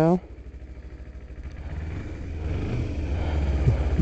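Motorcycle engine and wind noise growing steadily louder as the bike pulls away and picks up speed.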